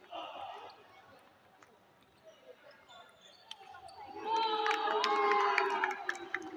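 A table tennis ball clicks off paddles and the table in a rally. About four seconds in, people's voices shout out loudly, the loudest part, as the point ends.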